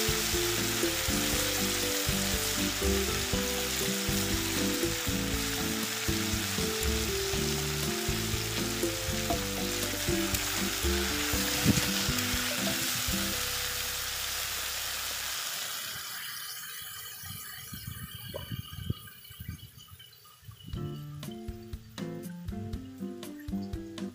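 Potato and papaya pieces sizzling in hot oil in a black kadai, under background music. The sizzle fades away about fifteen seconds in, leaving the music and a few sharp scrapes near the end.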